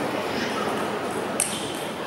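Steady murmur of a seated crowd in a sports hall, with one sharp click of a table tennis ball being struck about one and a half seconds in.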